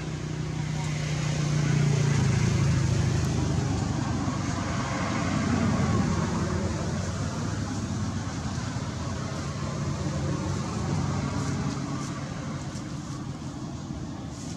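A motor vehicle passing, its engine and road noise swelling over the first few seconds and then slowly fading away.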